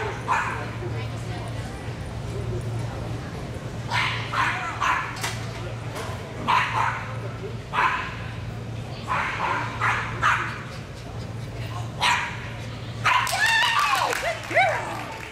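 A dog barking and yipping excitedly in short bursts that come in irregular clusters every second or so, over a steady low hum.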